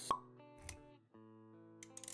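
Motion-graphics sound effects over background music: a sharp pop just after the start, then a short low thud about two-thirds of a second in. The music's held notes break off briefly near the one-second mark and then carry on.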